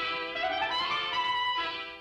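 Cartoon orchestral underscore: brass and woodwinds play held notes with a rising phrase in the first second, dropping away near the end.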